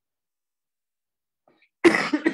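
Near silence, then near the end a man's sudden loud explosive breath into his hand, followed by a few shorter bursts.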